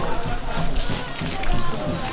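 Indistinct voices over steady background music.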